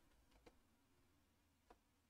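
Near silence: faint room tone with three faint short clicks, two close together about half a second in and a slightly stronger one near the end.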